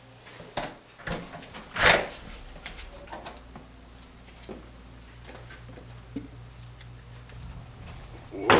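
An interior door being opened: the knob and latch click and the door knocks, loudest about two seconds in. After that come a few faint clicks over a low steady hum.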